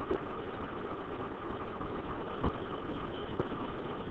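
Steady background hum and hiss of a room picked up by a desk microphone, with a few faint clicks, one about two and a half seconds in and another near the end.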